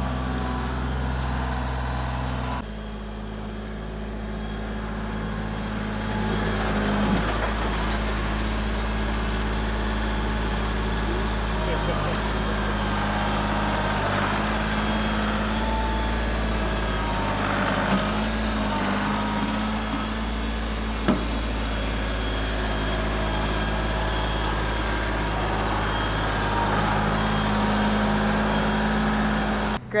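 Compact tractor engine running steadily as its front-end loader pushes and lifts soil, with a couple of sharp knocks along the way.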